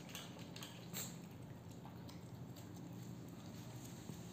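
Faint, scattered ticks of a Chihuahua's claws on a tile floor as it walks, over a low steady hum.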